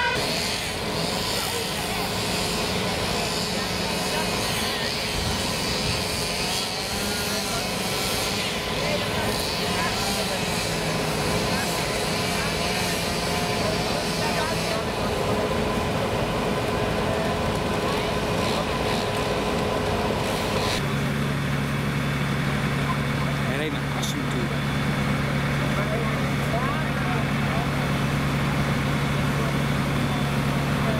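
Steady engine noise of fire-scene vehicles under indistinct background voices. About two-thirds of the way in it changes to a deeper, steady engine hum from a fire engine.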